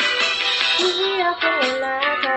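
A woman singing a karaoke cover of an anime opening song over an instrumental backing track with guitar. Her sung line comes in just under a second in and steps up in pitch.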